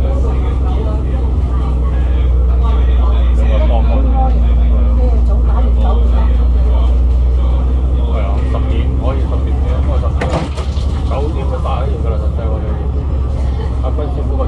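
The Cummins ISL8.9 diesel engine of an Alexander Dennis Enviro500 MMC double-decker bus, heard from inside the moving bus as a steady, heavy low drone. It briefly dips with a few sharp rattles about ten seconds in.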